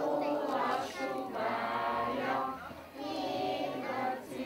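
A group of small children singing a Christmas song together with a man dressed as Santa Claus, in phrases with a brief break near the end.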